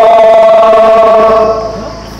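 A man's voice reciting a noha, a Muharram lament, holding one long sung note that fades out in the last half second.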